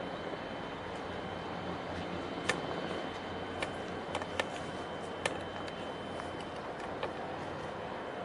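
Steady low engine rumble and hum across the harbour water, with about six short sharp clicks scattered through the middle.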